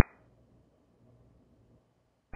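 Near silence: a pause in air traffic control radio audio, just after one transmission cuts off.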